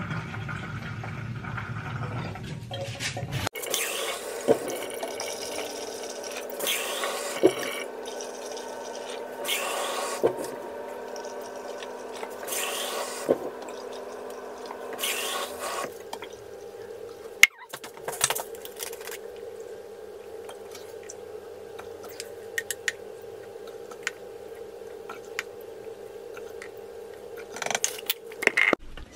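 Carpet shampoo poured cupful by cupful from a measuring cap into a carpet cleaner's plastic water tank: a string of short pouring splashes with small knocks of the cap, about one every three seconds, over a steady low hum. In the second half come quieter clicks of handling.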